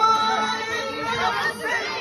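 A man singing a Kashmiri song with harmonium accompaniment, the harmonium holding a steady note under the voice that fades about one and a half seconds in.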